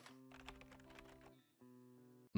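Faint intro jingle music: sustained plucked notes with light clicks, breaking off briefly partway through.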